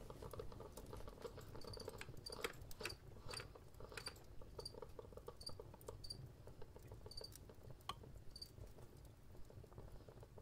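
Pen writing on paper: soft scratches and small clicks of the nib in quick irregular strokes. Faint short high chirps, some in pairs, come every half second or so through most of it.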